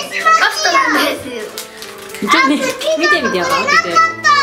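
Children's voices talking over background music with steady held notes.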